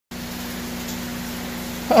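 Steady hum of large-aquarium equipment, pumps and aeration running, with two steady low tones over an even hiss.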